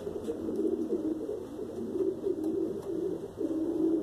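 Several homing pigeons cooing at once, their low coos overlapping continuously.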